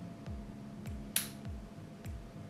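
A single sharp snip of shears cutting through a dipladenia (mandevilla) stem, about a second in. Quiet background music with a low, repeating beat runs underneath.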